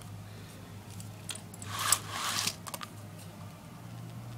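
Horizontal window blinds being handled shut: a short rustling clatter of the slats about two seconds in, with a few light clicks, over a steady low hum.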